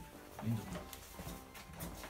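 Quiet background music under faint, low voices, with a short low sound about half a second in.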